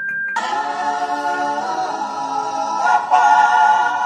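Background music: a choir singing, starting suddenly a fraction of a second in, just after a single held chiming note.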